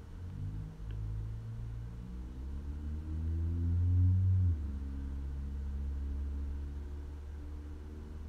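A low mechanical hum with a few steady tones, swelling and rising slightly in pitch, then dropping suddenly in level and pitch a little past halfway and running on steadily.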